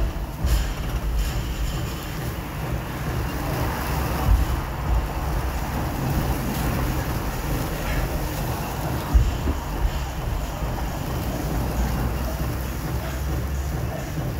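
Steady low outdoor rumble of wind and street traffic, with a few dull thuds from heavy 25 kg dumbbells on rubber gym flooring, the loudest about two-thirds of the way through.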